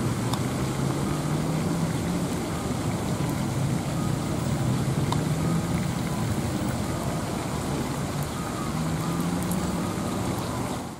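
A steady, low, engine-like drone with a slowly wavering hum, as from a motor vehicle running.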